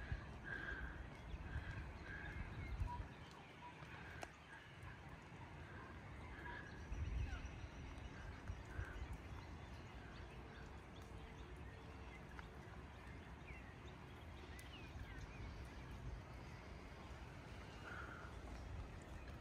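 Faint outdoor bush ambience: a bird calls over and over with short mid-pitched notes for the first half, then a few brief chirps near the end, over a low rumble that swells about seven seconds in.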